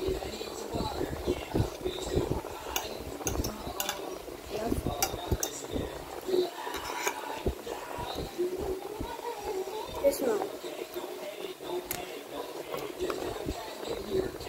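A metal fork clinking and scraping on a plate in scattered short clicks as noodles are picked up and eaten, over indistinct voices.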